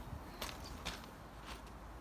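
A few faint footsteps on loose pebble gravel, spaced out and soft.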